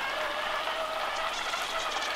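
Water running steadily out of a gravity-fed PVC watering pipe into plant pots.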